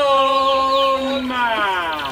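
A voice holding a long sung note, steady for about a second and then sliding down in pitch, with short falling bird-like chirps above it.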